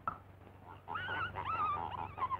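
A short click, then a high wavering whimpering cry that starts a little under a second in, bending up and down in pitch, as from a cartoon animal voice.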